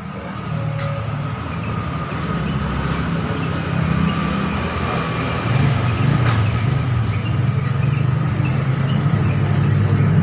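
A vehicle engine running with a steady low hum that slowly grows louder.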